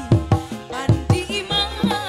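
Live Sundanese pop band music driven by kendang hand drums: loud drum strokes, each dropping in pitch, about two or three a second, over sustained melody instruments.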